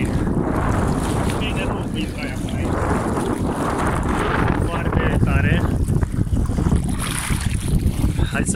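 Wind buffeting the phone's microphone in a steady, loud rumble, with faint voices breaking through now and then.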